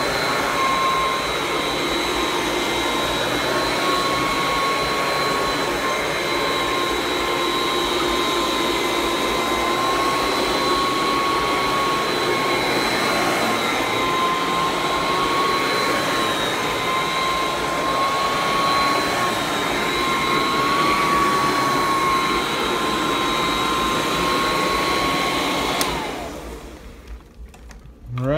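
A Royal Classic Edition model 9089 direct-air upright vacuum cleaner running steadily on carpet with a constant motor whine. Near the end it is switched off, and the whine falls in pitch and dies away as the motor winds down.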